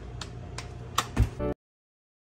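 A few sharp light clicks and a loud low thump over a faint steady low background, then the sound cuts off abruptly to dead silence about one and a half seconds in.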